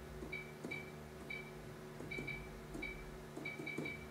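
Short electronic key-press beeps from a Toshiba ST-A10 touch-screen till, about ten of them at an uneven typing pace as letters are entered on its on-screen keyboard, each with a faint fingertip tap on the screen.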